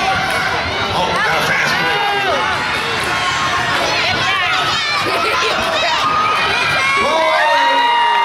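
Gymnasium crowd cheering and shouting, many high-pitched voices yelling over one another, with long drawn-out yells near the end.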